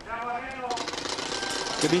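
A motorcycle engine running with a fast, rattling pulse, heard from a bike-mounted camera close behind a climbing rider. Voices are heard briefly at the start.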